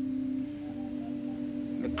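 One steady held organ note, sustained through a pause in the preaching, with a faint higher tone above it; it dips slightly in pitch about half a second in.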